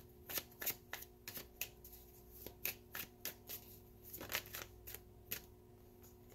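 Tarot cards being shuffled by hand: a faint, irregular run of soft card flicks and snaps.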